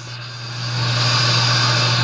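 Shop machinery running: a steady low hum, with a hiss that swells up about half a second in and then holds steady.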